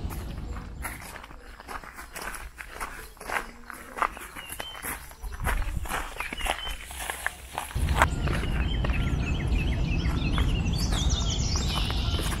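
Footsteps of a person walking, a run of irregular steps and light knocks. About eight seconds in they give way to a steady low rumble.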